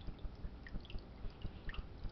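Aquarium water dripping and trickling at the surface: a quick, irregular run of small high plinks over a dense patter of low, dull knocks.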